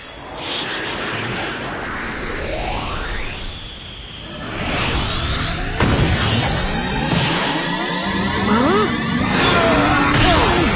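Dramatic soundtrack music laid over sweeping whoosh effects that rise in pitch, with a sudden loud hit about six seconds in, typical of an animated boxing lunge and punch.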